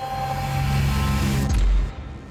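Broadcast ident sound effect: a swelling whoosh over a low drone that builds, then breaks off in a deep boom about a second and a half in and dies away.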